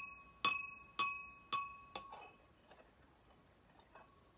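Small chime or bell struck four times, about twice a second, each strike ringing on the same clear high pitch and fading away. The strikes stop about halfway through, leaving the last ring to die out.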